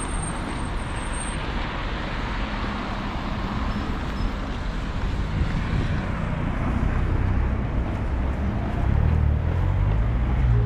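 Street traffic noise: a steady rumble of road vehicles, growing louder near the end.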